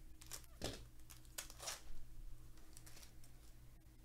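Foil wrapper of a Topps Chrome baseball card pack crinkling as the cards are pulled out of it, in a few short rustles during the first two seconds. A steady low electrical hum runs underneath.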